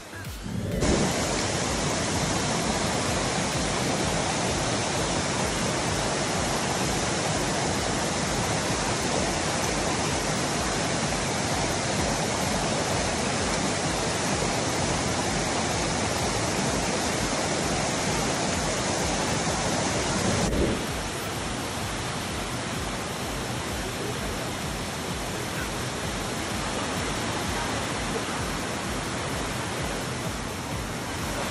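Waterfall rushing over rock in a steady roar of water. About two-thirds of the way through it cuts to a slightly quieter rush of the same water.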